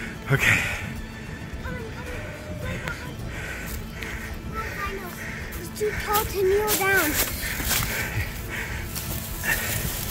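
Background music with a soft, evenly repeating pulse, and a short falling, wavering cry about six to seven seconds in.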